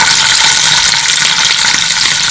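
Hot oil sizzling steadily with a fine crackle in a non-stick frying pan, with fennel seeds, green chillies and ginger-garlic paste frying in it.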